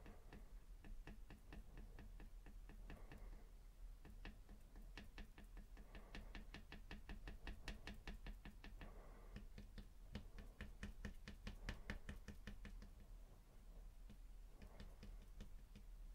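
Faint, quick tapping of a small brush dabbing acrylic paint onto canvas, several taps a second in runs, stopping shortly before the end.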